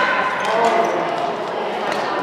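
Echoing badminton hall with people talking and a few sharp hits, the kind a racket or shuttlecock makes, around half a second in and again near the end.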